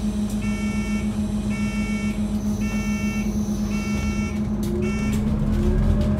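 Scania N280UD bus's five-cylinder diesel idling at a stop while the door warning beeper sounds about once a second, five times. Near the end the beeping stops and a rising whine comes in as the bus pulls away, getting louder.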